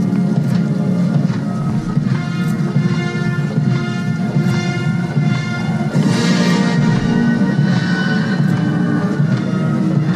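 Military band playing a slow funeral march for a procession, with sustained brass and woodwind chords and a drumbeat about every two seconds.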